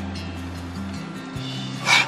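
A man's forceful, explosive exhale, a deep cleansing breath, near the end, over steady background music with sustained low notes.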